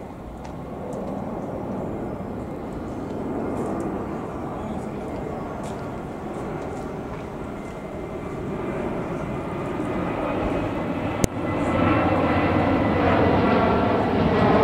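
Diesel locomotive hauling a rake of coaches, its engine and wheel noise growing steadily louder as it approaches and passes close by, with a single sharp click about eleven seconds in.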